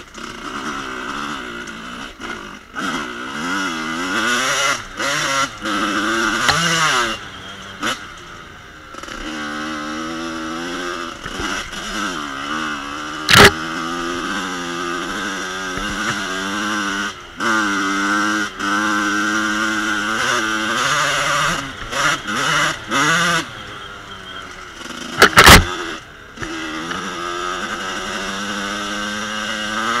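1986 Kawasaki KX125's two-stroke single-cylinder engine on the move, revving up and falling back again and again as the rider works the throttle and gears over a rough trail. Two sharp knocks stand out, about halfway through and again near the end.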